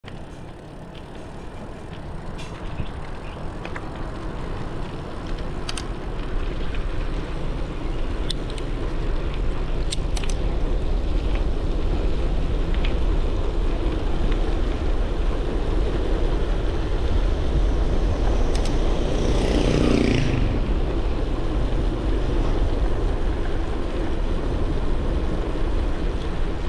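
Wind rushing over an action camera's microphone on a moving bicycle, with tyre noise on asphalt, growing louder over the first ten seconds as the bike picks up speed, then holding steady. Scattered sharp clicks and rattles from the bike, and a brief pitched sound about twenty seconds in.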